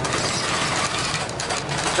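Cabin noise inside a moving 2014 New Flyer Xcelsior XDE40 diesel-electric hybrid bus: steady road and drivetrain noise with a few faint clicks.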